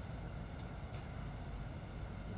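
Quiet room tone in a council chamber: a steady low hum, with two faint ticks about half a second and a second in.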